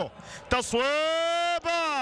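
A football commentator's long, drawn-out shout in Arabic, held on one high note for about a second and falling away at the end, as a shot goes at goal.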